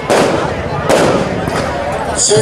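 Two sudden bursts of loud noise about a second apart, each dying away, in a pause between shouted speech.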